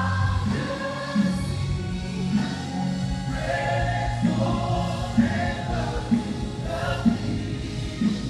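A congregation and a praise team of singers singing a gospel worship song together, many voices at once, over instrumental accompaniment with a steady beat.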